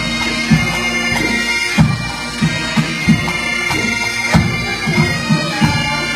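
Pipe band playing: Great Highland bagpipes, their drones holding steady under the chanter melody, with sharp drum strokes.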